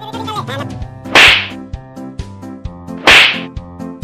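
Two loud slap sound effects about two seconds apart, each a sharp hit that fades quickly, over light background music with a steady beat.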